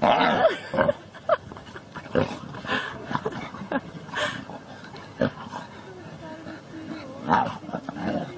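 A bulldog play-fighting with a white lion cub and a white tiger cub, with short animal cries and scuffling. The noise is loudest at the very start, with scattered calls after it and another burst near the end.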